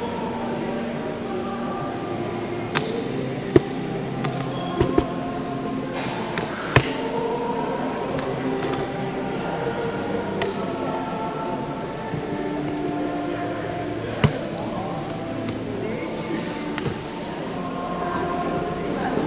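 Indistinct voices and music from a gathering, with a few sharp knocks about three and a half, five, seven and fourteen seconds in.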